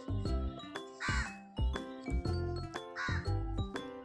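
Background music with a steady beat, over which a crow caws twice, about a second in and again near the end.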